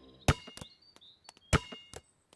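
Cartoon sound effect of a basketball bouncing twice on a hard court: two sharp thuds a little over a second apart.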